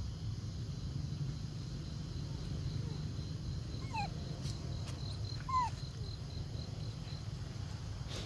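Macaque giving two short falling squeaks about a second and a half apart, a little past the middle, over a steady low rumble of background noise.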